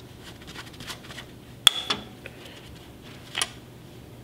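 Light metallic clinks and knocks of a V-twin engine's valve cover and its hardware being handled during removal, with one sharp ringing clink about two seconds in and a few softer taps after it.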